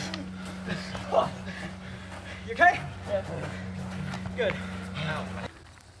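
Faint scattered voices and a laugh over a steady low hum, both cutting off abruptly shortly before the end.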